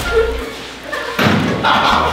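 A heavy thud about a second in as a person falls from a seat onto a hard classroom floor, followed by a burst of voices.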